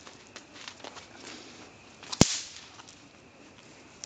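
A single sharp crack of a thrown bang snap (a throw-down party popper) bursting on the ground about two seconds in, with a few faint ticks before it.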